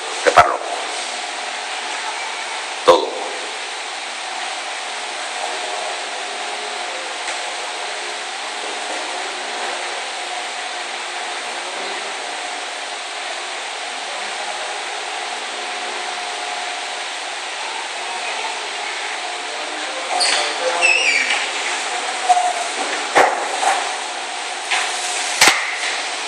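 Steady rushing background noise with a faint hum, broken by a few sharp knocks. From about twenty seconds in come short irregular sounds of movement or voice.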